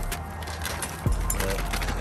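Clear plastic bag rustling and crinkling as a bagged clutch slave cylinder is handled, over a steady low rumble, with a thump about a second in.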